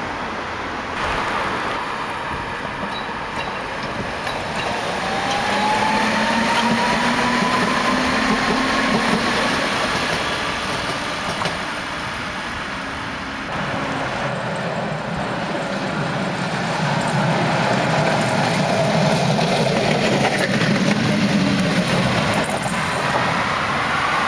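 ČKD Tatra trams running on street track: wheels rumbling on the rails, with the traction motors' whine rising in pitch over several seconds as a tram accelerates. After a cut about halfway through, another tram passes, louder.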